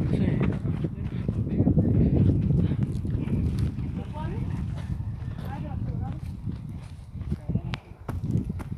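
Faint voices of people talking at a distance, over rumbling handling noise and footsteps on a dirt path as the phone's holder walks; a few sharp clicks near the end.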